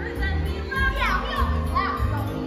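Musical-theatre accompaniment with a steady bass, and a group of children's voices calling out over it; one high voice slides sharply down in pitch about a second in.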